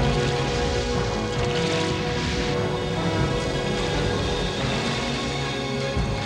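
Cartoon soundtrack music of sustained chords, with a noisy rush in the highs about two seconds in.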